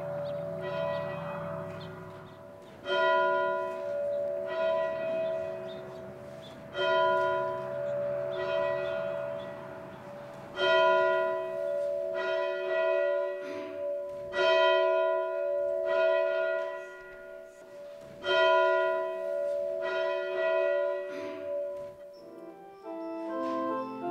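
A church bell tolling over and over, each strike ringing on and fading. Louder strikes come about every four seconds, with softer strikes between them.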